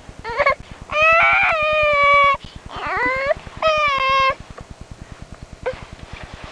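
An eight-month-old baby girl vocalizing in high-pitched, drawn-out squeals: four of them, a short one, a long held one lasting over a second, one that rises in pitch, and another held one.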